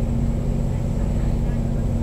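A steady low hum and rumble with a constant drone, unbroken and even in loudness.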